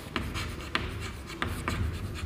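Chalk writing on a chalkboard: a run of short taps and scrapes as the letters are written.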